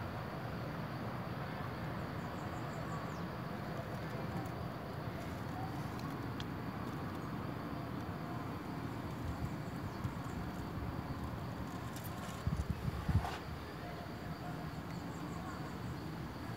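Steady low background rumble with a few faint high chirps, and a brief cluster of low thumps about twelve seconds in.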